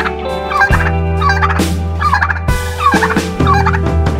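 Turkey tom gobbling repeatedly, over background music with held bass notes and a steady beat.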